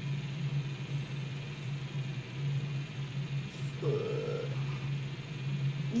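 A steady low hum of room noise, with a short hesitant "uh" from a boy's voice about four seconds in.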